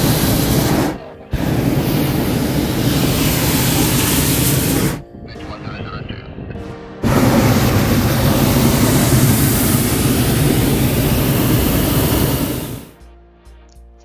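Hot-air balloon propane burner firing overhead in long blasts: a loud, steady roar that stops for a moment about a second in, runs on to about five seconds, pauses for about two seconds, then fires again for about six seconds before cutting off near the end.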